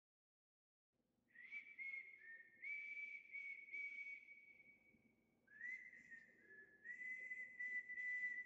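Faint whistling: a few held notes close together in pitch, in two phrases, starting about a second in with a short break near the middle.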